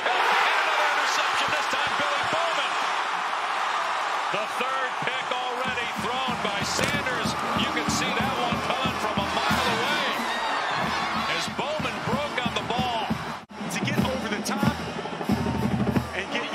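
Stadium crowd cheering, loudest at the start. About six seconds in, a marching band's drums join in with a steady beat.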